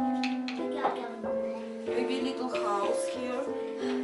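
Background music of slow, held notes stepping from one to the next, with brief talking voices mixed in.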